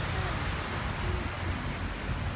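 Steady rush of a large fountain's tall water jet and falling spray, with wind rumbling on the microphone.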